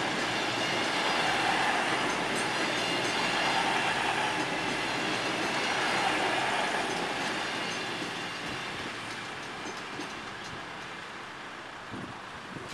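CrossCountry diesel passenger train passing at speed over a level crossing, its wheels clattering on the rails. The sound fades away over the last few seconds as the rear of the train goes by.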